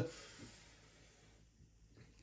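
Near silence: room tone, with the tail of a spoken word and a faint hiss fading out just after the start.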